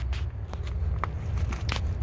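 A few faint crunches of footsteps on gravel over a low, steady rumble of wind on the microphone.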